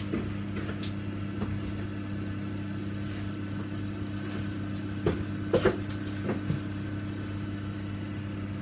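Steady electric hum of an egg incubator's fan motor, with a few short clicks and knocks a little past halfway.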